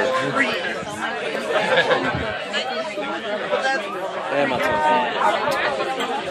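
Several people chattering and talking over one another, with a laugh at the start.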